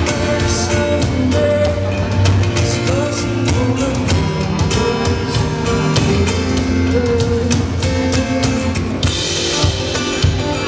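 Live pop-rock music from a stage PA: drum kit, bass and guitar playing a song at a steady loud level, with regular drum hits.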